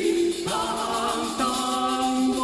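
A small early-music vocal ensemble singing in polyphony: several sustained, interweaving lower voice parts, with a higher wavering line joining about half a second in.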